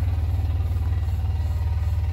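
Engine of a small ride-on vehicle running steadily, a low, even hum with a fine pulsing.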